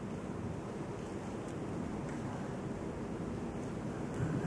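Steady, faint rushing background noise, with no distinct events: the room tone of a quiet hall picked up by an open desk microphone.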